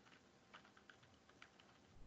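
Faint computer keyboard typing: a quick, uneven run of about a dozen light keystrokes.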